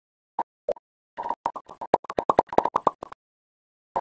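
Intro sound effect of short pops over digital silence: two single pops, then a quick irregular run of about fifteen that stops about a second before the end.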